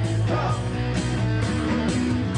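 A live rock and roll band playing an instrumental passage with no vocals: electric bass and guitar over a steady beat.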